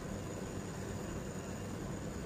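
Steady low hum and hiss, with the soft sound of a wooden spoon stirring rice in a nonstick pan.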